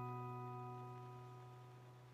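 The last chord of a music box melody ringing out, its notes fading steadily away toward silence.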